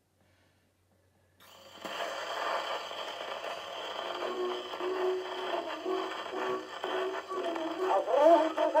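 Wind-up portable gramophone playing a 78 rpm shellac record: about a second and a half in the needle meets the groove and surface hiss and crackle start, followed by the record's instrumental introduction, with a tune clearly forming from about four seconds in.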